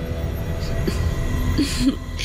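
A low, steady rumbling drone of a dramatic TV background score, with a short vocal sound near the end.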